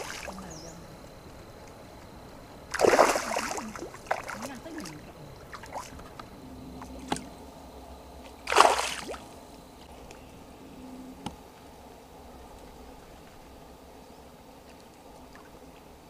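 Large fish thrashing in the shallow water of a pond being drained: two loud splashes, about three seconds in and again near nine seconds, with smaller splashes between.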